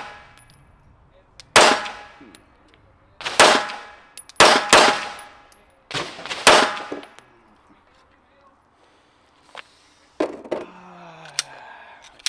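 Six shots from a Glock 19 Gen 4 9mm pistol fitted with a Radian Ramjet compensator and Afterburner, firing 124-grain defensive hollow points, each shot with a ringing tail. The shots are unevenly spaced over about five seconds, the third and fourth close together. A few lighter clicks and knocks follow near the end.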